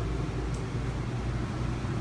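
RV air conditioner running steadily, a low hum with air rushing through the ceiling vents.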